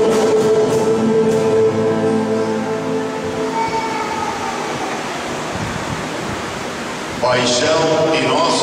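A sung hymn with choir and accompaniment ends on a long held chord about two seconds in, and softer sustained tones linger for a few seconds after. A man starts speaking near the end.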